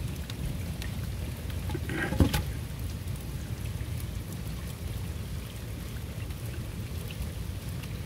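Steady rain falling on wet ground, with runoff water running under a wooden fence. There is a single sharp knock about two seconds in.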